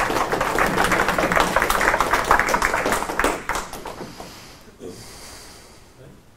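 An audience applauding at the end of a talk: many hands clapping densely, then dying away after about three and a half seconds.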